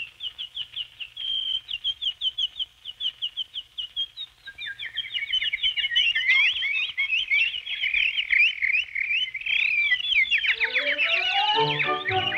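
Cartoon bird chirps: one bird chirping in quick, even falling chirps, about four a second. About four seconds in, a second, lower voice joins and the chirping of a flock thickens. Near the end, music rises in under the chirping with climbing notes.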